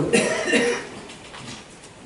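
A single short cough right at the start, lasting under a second, followed by quiet room sound.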